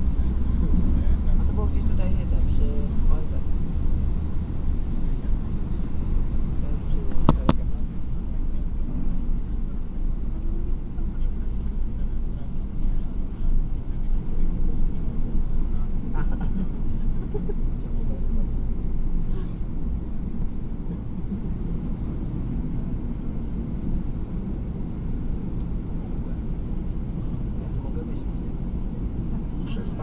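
Steady low rumble of a city bus's engine and running gear, heard from inside the bus while it drives. It is loudest in the first few seconds and eases a little after about twenty seconds as the bus closes up on the traffic ahead. A single sharp click comes about seven seconds in.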